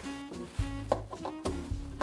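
Soft background music, with a couple of light clicks about a second in from a power-supply plug and cable being handled.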